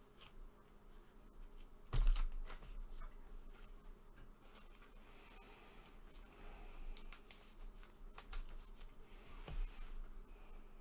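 Gloved hands handling a trading card and its plastic holder: a knock about two seconds in, then light clicks and rustling, with a smaller knock near the end.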